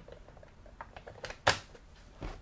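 Removable battery pack pushed into the bay of an upturned HP laptop: a few light plastic clicks, then one sharp click about one and a half seconds in as the battery latches into place.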